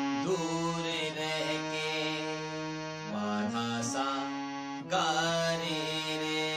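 Harmonium playing a slow melody in long held reed notes, stepping to a new pitch a few times.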